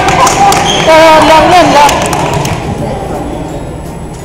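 Girls' voices calling out in an echoing gym, with a few sharp knocks of a volleyball being hit and bounced in the first two seconds; after that the voices die away and the hall goes quieter.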